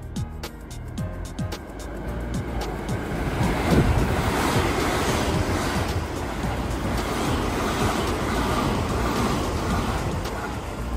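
Keio electric train pulling into the station platform: the noise of its wheels and running gear builds over the first few seconds and stays loud and steady as the cars run close past. Background music plays faintly underneath.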